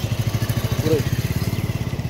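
A vehicle's engine running steadily close by, with an even throb of about a dozen pulses a second.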